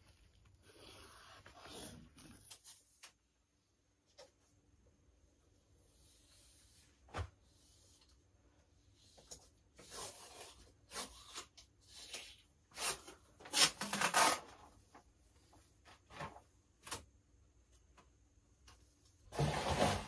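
Handling noises in a small room: a soft rub against the wall at first, then scattered knocks and rustles, loudest a little past the middle.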